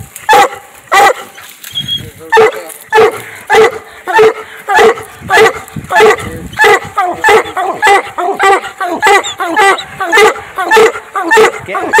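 Coonhounds barking treed at the base of a tree, a steady run of loud chop barks about two a second. The barking is the hounds' signal that they have a raccoon up the tree.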